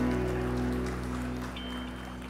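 A live band's final chord ringing out and fading steadily, with a brief high tone just before the end.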